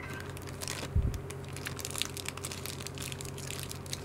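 Candy wrapping crinkling and crackling as it is handled, in quick irregular crackles, with one dull thump about a second in.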